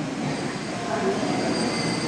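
Steady background hiss with faint thin high whines and no distinct event, heard in a short gap between phrases of a man's speech.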